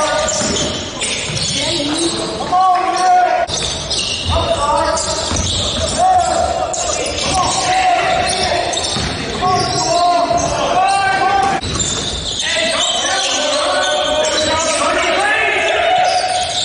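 Live basketball game sound in a gymnasium: a basketball bouncing on the hardwood court amid shouting voices, echoing in the hall.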